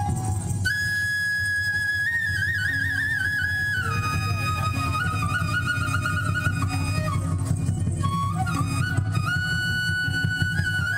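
Sikkimese folk dance music played on stage: a high melody of long held notes with trilled ornaments, over a steady low drum beat.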